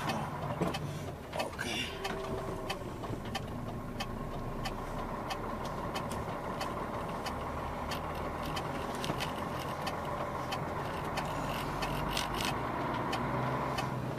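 Delivery truck's engine heard from inside the cab, running steadily at low speed, with scattered light clicks and rattles.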